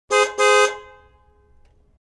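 A car horn honks twice, a short beep then a slightly longer one, and rings out as it fades over about a second.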